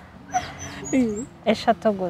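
Short, broken vocal sounds from a person, a falling-then-rising 'mm'-like sound about a second in and brief laugh-like sounds near the end, with faint bird chirps early on.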